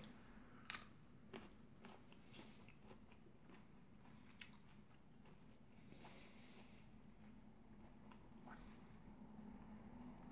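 Faint mouth sounds of a person biting into and chewing a small, unripe jujube fruit. A few soft clicks and crunches sound over near silence, the clearest about a second in.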